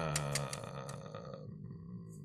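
A man's voice held on one long, low, drawn-out hum that fades after about a second and a half.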